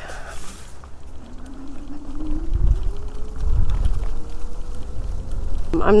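Electric scooter's motor whining as it accelerates from a standstill, the whine rising steadily in pitch from about a second and a half in. Under it a low rumble grows louder as the speed picks up.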